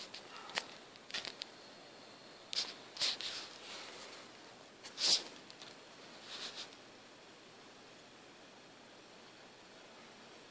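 A few short rustles and clicks of handling noise, scattered through the first seven seconds, then only faint steady room hiss.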